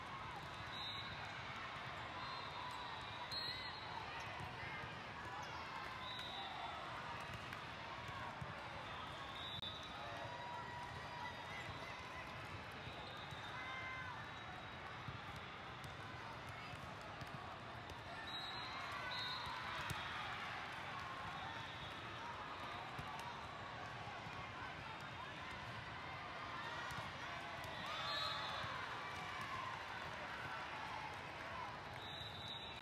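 Steady babble of many voices echoing in a large hall, with volleyballs being hit and bouncing and short high chirps now and then. It is a little louder for a moment near the middle and again near the end.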